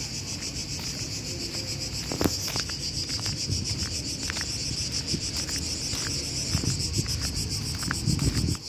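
Steady high-pitched shrilling of a chorus of insects in the trees, pulsing rapidly without a break. Underneath are a low rumble and a few soft clicks.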